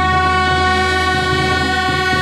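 Wind instruments of a small street band holding one long, steady note, with a low hum underneath.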